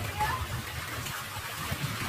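Wind buffeting the microphone as an uneven low rumble over a steady hiss of open-air sea ambience, with a brief faint high-pitched voice in the distance about a quarter second in.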